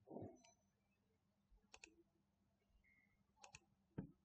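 Near silence, broken by a soft muffled sound at the very start and a few faint sharp clicks: a quick pair a little under two seconds in, another pair about a second and a half later, and a single click at the end.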